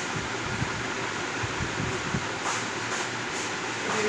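Steady background hiss and low hum, with a few faint ticks about two and a half to three and a half seconds in.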